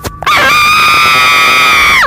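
A cartoon character's long, loud scream, held on one pitch for about a second and a half and falling away at the end. A sharp knock comes just before it.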